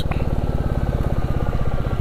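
Royal Enfield single-cylinder motorcycle engine running at a steady low cruise, its exhaust beating in an even rhythm as the bike rolls along.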